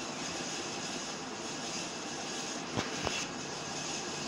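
A steady whooshing background noise, with two short sharp clicks a little under three seconds in.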